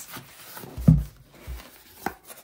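Cardboard shipping box being handled and pulled open, with a dull thump about a second in and a softer one half a second later.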